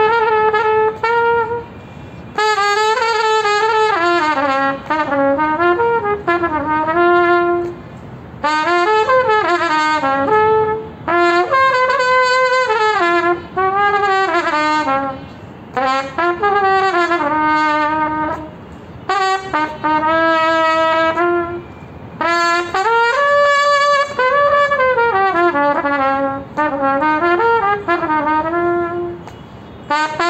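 Solo trumpet playing a slow ghazal melody in sustained, sliding phrases with ornamental turns, broken by short pauses for breath.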